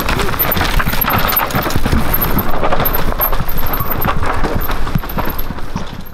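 Mountain bike descending a rocky, loose-dirt trail: tyres crunching and skidding over dirt and stones with a dense, continuous rattle of knocks from the bike.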